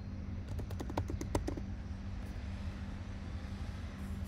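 Typing on a computer keyboard: a quick burst of about ten keystrokes lasting about a second, over a steady low hum.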